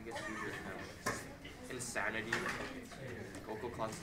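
Indistinct voices of students talking in a classroom, with no clear words, including a high-pitched voice.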